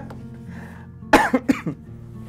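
A man's brief laugh: three or four quick breathy bursts about a second in, over soft acoustic guitar background music that plays steadily throughout.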